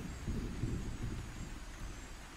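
Low, uneven rumbling of distant thunder over a soft wash of tropical rain.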